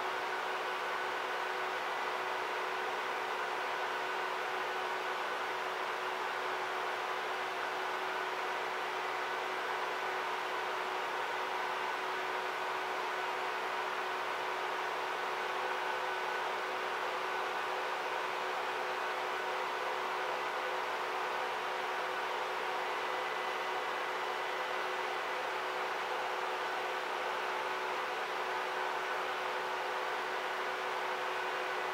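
Steady hum and hiss of video projector cooling fans, with several faint whining tones held level throughout.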